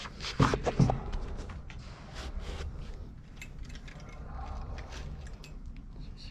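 Clothes hangers clicking and scraping along a metal clothing rail as garments are pushed aside by hand, with a few louder knocks in the first second and scattered sharp clicks after.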